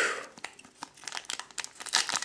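Foil Pokémon booster pack wrapper crinkling and crackling as it is handled and torn open, loudest right at the start, with the crackles coming thicker toward the end.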